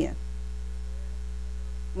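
Steady low electrical mains hum, with no other sound.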